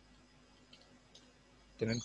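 A few faint, scattered clicks of computer keyboard keys being typed.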